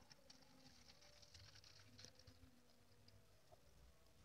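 Near silence: a very faint trickle of nutrient solution being poured from a plastic measuring jug into a plastic bottle.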